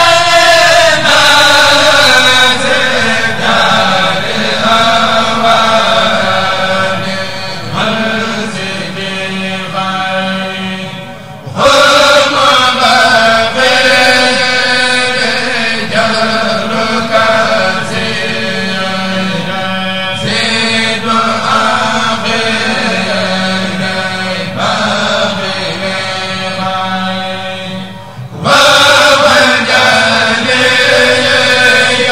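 A group of men chanting a Mouride khassida (Arabic religious poem) in unison, in long, sustained melodic phrases. Each phrase starts loud and slowly fades, and new phrases break in strongly about a third of the way in and near the end.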